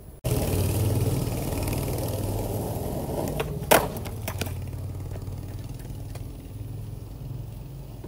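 Skateboard wheels rolling on rough asphalt, a steady rumble, broken about halfway through by one sharp clack of the board during a trick attempt and a few lighter knocks. The rolling then slowly fades.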